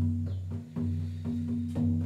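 Shamanic drum beating a steady, even pulse of about four beats a second over a sustained low droning string tone.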